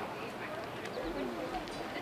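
Indistinct voices talking in the background over outdoor ambience, with no clear words.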